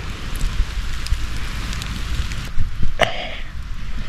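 Frozen rain falling with a steady hiss, wind rumbling on the microphone beneath it; the hiss eases about two and a half seconds in. About three seconds in there is a short throat-clearing sound.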